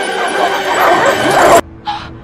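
Dog barking and yipping over dramatic music, cut off abruptly about one and a half seconds in; a brief higher sound follows near the end.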